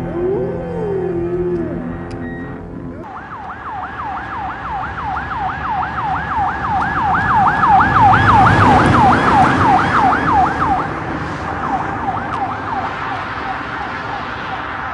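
A yelp-type emergency vehicle siren, its pitch sweeping up and down rapidly about three times a second. It grows louder past the middle and then fades. Music tails off in the first three seconds before the siren starts.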